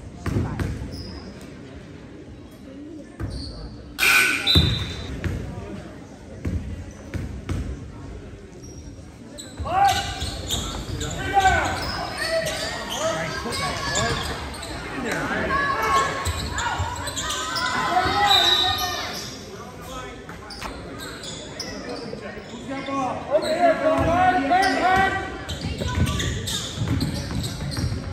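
A basketball bouncing on a hardwood gym floor, a few separate thuds over the first several seconds, in a large echoing hall. From about ten seconds in, many overlapping voices of spectators and coaches call out and shout over the play.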